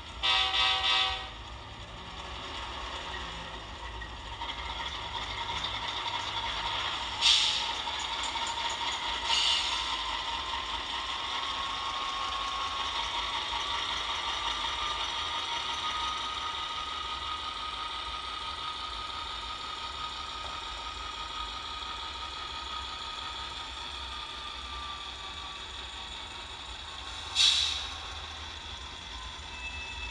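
HO-scale Atlas Dash 8-40CW model locomotive with a freshly fitted motor on a test run: a steady motor and gear whine that rises in pitch as it speeds up and falls again as it slows. A loud burst comes in the first second, and a few short sharp clicks come later.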